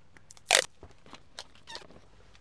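Handling noise: a brief sharp crackle about half a second in, followed by a few faint clicks.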